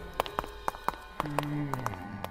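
Footsteps on a hard floor, short sharp steps about three or four a second. A brief low tone sounds a little past the middle, falling slightly in pitch.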